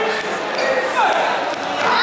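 Several voices calling out and shouting in a large echoing sports hall, with a falling call about halfway through and a louder call near the end, and a few dull thumps on the mat.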